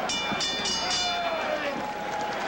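Boxing ring bell struck about four times in quick succession, ringing out for the first second or so over crowd noise: the signal for the end of the round.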